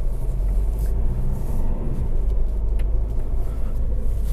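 Fiat Egea's 1.6 MultiJet four-cylinder turbodiesel heard from inside the cabin while driving off: a steady low rumble of engine and road noise.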